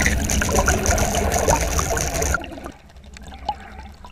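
Water sound, loud for about two and a half seconds, then falling away to a faint wash with a few small clicks.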